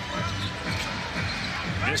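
A basketball being dribbled on a hardwood arena court, heard over arena music.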